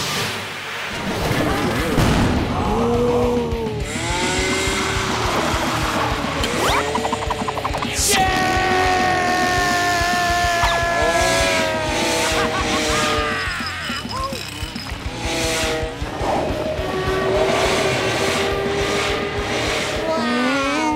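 Cartoon soundtrack mixing music, sound effects and wordless character vocalisations, full of sliding, bending pitches.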